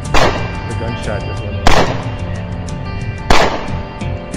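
Three gunshots about a second and a half apart, each a sharp crack with a short ringing tail, over steady background music.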